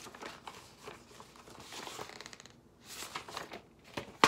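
Paper and thin card rustling and crinkling as coupon leaflets and a card envelope are handled and leafed through, in short, uneven rustles.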